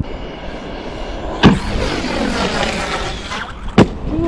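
Electric RC monster truck (Tekno MT410) with its motor whining up and down in pitch as it revs, and two sharp knocks, one about a second and a half in and one near the end.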